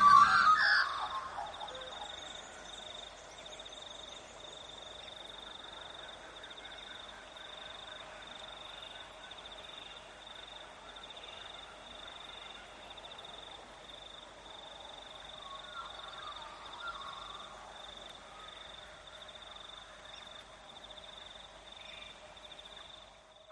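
Faint outdoor chorus of calling insects and frogs: a steady high pulsing chirp over a lower continuous drone of calls, with a few louder calls about two-thirds of the way through.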